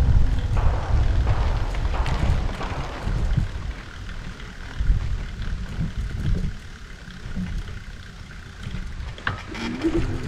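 Wind buffeting a bike-mounted microphone over the low rumble of bicycle tyres rolling from pavement onto a loose sand road, easing off after a few seconds. There is a single sharp click near the end.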